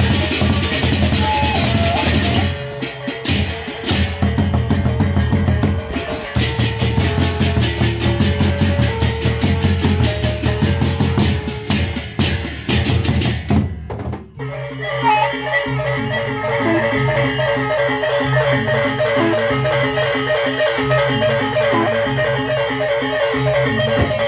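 Sasak gendang beleq gamelan playing: large barrel drums, clashing hand cymbals and gongs, loud and dense with rapid cymbal strikes. About fourteen seconds in the crashing drops away and the music goes on as an evenly pulsing pattern of repeated pitched gong notes over the drums.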